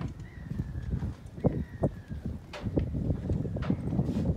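Footsteps on a marina pontoon: a few sharp knocks about a second and a half in and again near the end, over low wind rumble on the microphone, with faint high bird calls in the first half.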